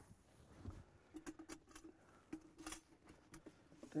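Faint scattered clicks and rustles of a lunch container being fished out and handled in a truck cab.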